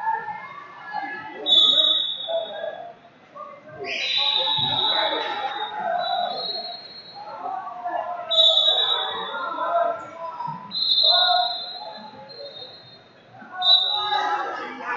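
Crowd chatter in a large hall, over which a referee's whistle sounds about five times, each a short steady blast of up to a second.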